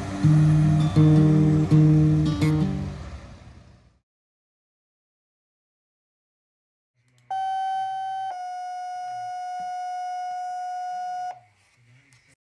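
A guitar song fades out over the first few seconds. After a short silence comes a fire-dispatch two-tone page: a first tone of about a second steps to a slightly lower second tone, held about three seconds before it cuts off.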